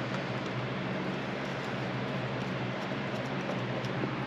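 Steady workshop room noise: an even hiss with a low, steady hum, like a running air-conditioning unit.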